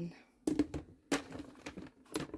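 Several short, sharp clicks and knocks of hard plastic as a clear plastic storage box and its contents are handled.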